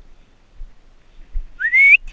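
A person whistles one short note that rises in pitch, near the end.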